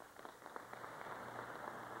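Audience applause, building over the first half second and then holding steady.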